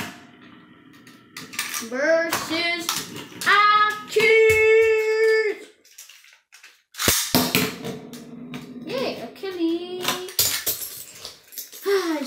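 A Beyblade spinning top whirring faintly on a wooden tabletop for about two seconds, then a boy's wordless vocal sounds, the loudest a long held note. From about seven seconds in come repeated clicks and rattles of the top's parts being handled.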